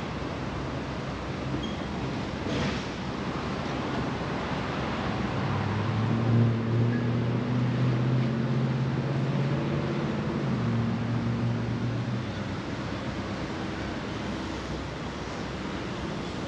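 Steady outdoor rushing noise, with an engine's low drone coming in about five seconds in and dying away about twelve seconds in.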